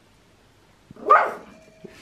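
A Pomeranian barks once, a short bark about a second in.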